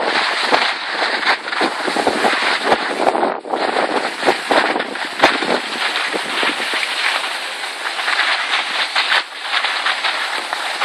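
Skis sliding and scraping over hard-packed groomed snow, a loud steady rasp full of small crackles, with wind buffeting the microphone.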